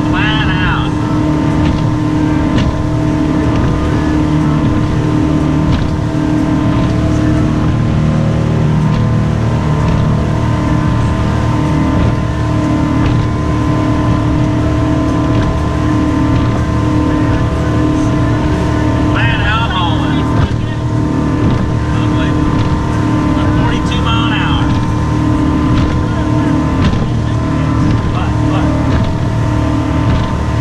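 Rinker Fiesta Vee cabin cruiser's engine running steadily underway, a loud, even drone with a few fixed tones over a rush of wind and water noise.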